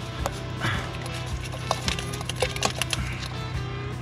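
Scattered small clicks and scrapes of rock and grit crumbling as fingers pry a Herkimer diamond quartz crystal loose from a crevice in the rock, over background music.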